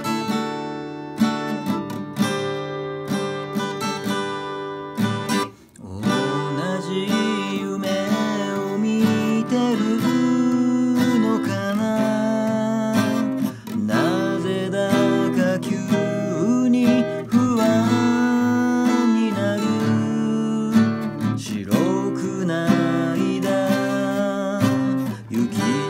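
Steel-string acoustic guitar with a capo, playing a slow ballad's chord accompaniment, strummed and picked; the playing breaks off briefly about six seconds in.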